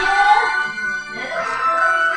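Music playing from a television's speakers, a continuous melody from the show's soundtrack.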